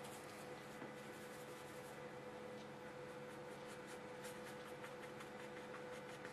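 Brush strokes on watercolour paper: short, faint, scratchy dabs, grouped at the start and again about four to five seconds in, over a steady electrical hum.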